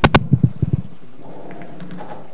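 A quick run of knocks and thumps in the first second, the first one sharpest, then faint murmured talk.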